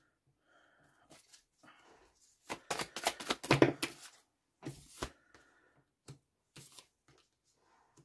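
Tarot cards being handled and dealt onto a wooden tabletop: a series of short card slaps, slides and flicks, thickest about two and a half to four seconds in, with a few more strokes after.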